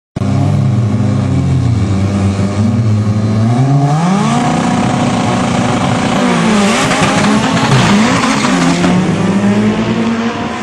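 Two drag-racing hatchback engines, one of them a Toyota, revving and holding revs at the start line, the pitch sweeping up about four seconds in. From about six and a half seconds in they launch at full throttle and pull away down the strip, the sound turning rougher and noisier.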